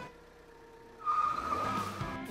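Tyre-squeal sound effect: after a brief quiet moment, a steady high squeal starts about a second in and holds.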